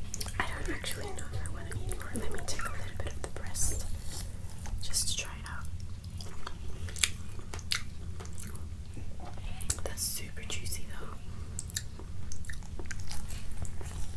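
Close-miked chewing and mouth sounds from eating rotisserie chicken, with fingers pulling at the roasted skin and meat, many short sharp clicks and crackles, over a steady low hum.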